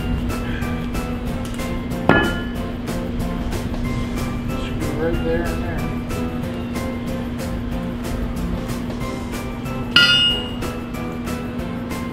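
Two ringing metal clangs, about two seconds in and again near the end, the later one a hammer strike on a homemade anvil cut from railroad track, its ring dying away over about half a second. Background music plays throughout.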